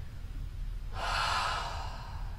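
A single audible breath through the mouth, about a second long, starting halfway through: a person resting and recovering their breath after a strenuous yoga exercise.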